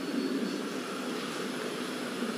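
Steady, even background noise of the hall during a pause in the speech: a constant hum and hiss with no distinct events.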